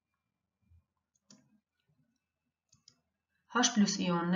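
Near silence broken by a few faint, short clicks spread through the first three seconds, then a narrating voice starts speaking near the end.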